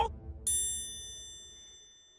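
A single bright, bell-like ding at the end of the song's music, struck about half a second in and ringing with several clear high tones that fade away over about a second and a half.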